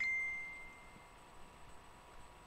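A single bright ding: a short rising blip, then one clear ringing tone that fades away over about a second.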